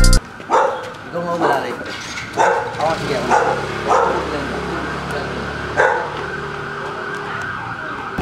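A dog barking in a string of short, irregular barks, several close together in the first half and one more near six seconds in.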